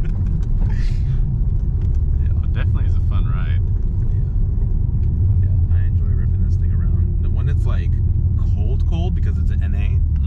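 Steady low rumble of a 2019 Toyota Corolla Hatchback's 2.0-litre four-cylinder engine and road noise, heard inside the cabin while driving, with laughter and brief talk over it.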